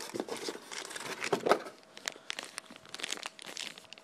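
Plastic packaging crinkling and rustling as accessories are handled out of a cardboard box. It is a dense run of irregular crackles over the first second and a half, then sparser and quieter.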